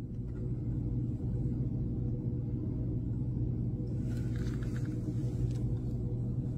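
Steady low rumble of blizzard wind buffeting the microphone.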